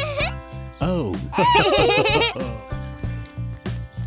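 Cartoon characters giggling and laughing in high voices over background music with a steady beat. The laughter comes as one loud burst from about one to two and a half seconds in.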